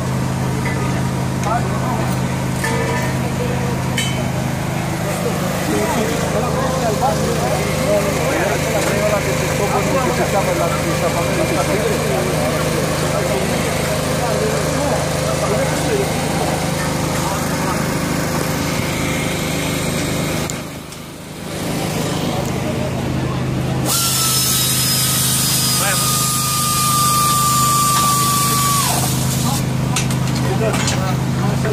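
Busy workshop background of indistinct voices over a steady low hum. About 24 seconds in, a power tool runs for about five seconds, a hiss with a steady whine, then stops.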